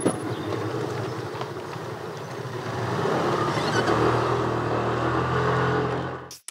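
Small motor scooter engine running, growing louder and revving up from about halfway through.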